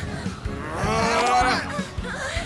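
A long, drawn-out vocal cry from a cartoon character, lasting about a second and starting about half a second in, over background music.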